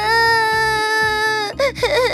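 A cartoon character's voice crying in one long, drawn-out wail at a steady pitch, breaking into shorter sobbing cries near the end; the crying is the effect of a cake meant to make whoever eats it sad.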